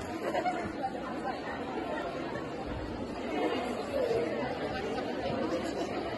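Low, indistinct chatter of a few people's voices, echoing in a large sports hall.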